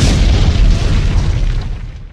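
Explosion sound effect: a sudden loud boom followed by a deep rumble that holds for about two seconds and fades out at the end.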